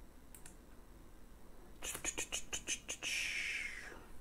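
Typing on a computer keyboard: a quick run of about eight keystrokes starting about two seconds in, followed by a short breathy hiss near the end.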